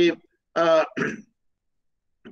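A man clearing his throat in two short bursts, about half a second and a second in, just after the end of a spoken word.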